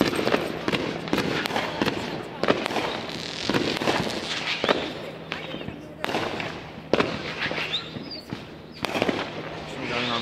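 Aerial fireworks bursting overhead: a dense, irregular run of crackling pops, with sharper, louder reports about every two seconds.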